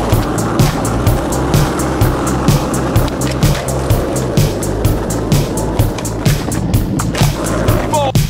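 Skateboard wheels rolling over rough asphalt, a steady gritty rumble that fades out near the end, under a music track with a steady beat.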